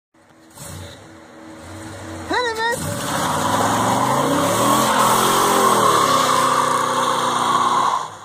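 LT1 small-block V8 of a 1979 Corvette idling, then revving sharply about two and a half seconds in as the car launches hard, with the rear tyres spinning on the wet road and the engine note rising and falling as it pulls away.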